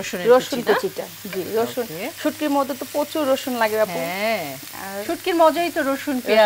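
Chopped onions sizzling in mustard oil in a frying pan, heard under a woman's steady talk.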